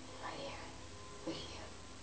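A woman whispering two short breathy phrases over a low steady hum.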